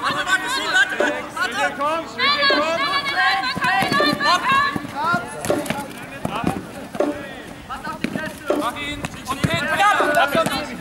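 Players' voices calling and shouting across the field throughout, strongest in the first half, with scattered sharp knocks of foam-padded jugger weapons (pompfen) striking.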